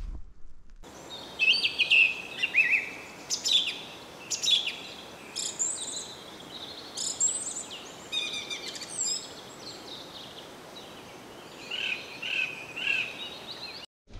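Birds singing: a varied run of high chirps, trills and whistles over a steady faint hiss, starting about a second in, with a quick series of short repeated notes near the end.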